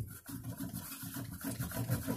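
A cloth rag wetted with denatured alcohol scrubbed quickly back and forth along a guitar's fretboard and frets, a fast, even rubbing of about five strokes a second.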